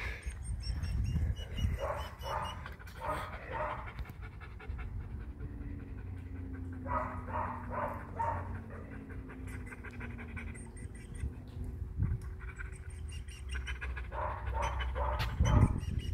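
Wolfdogs panting, in three bouts of quick, rhythmic breaths over a low rumble.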